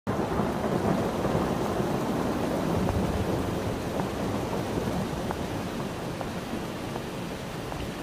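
Heavy rain falling steadily, with a low rumble of thunder strongest in the first few seconds; the downpour grows a little quieter toward the end.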